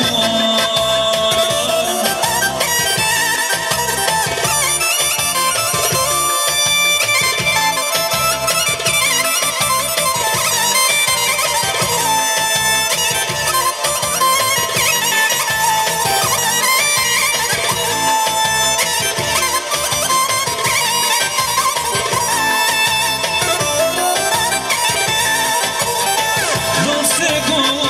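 Loud folk dance music for a circle dance: a steady, evenly repeating drum beat under a held wind-instrument melody.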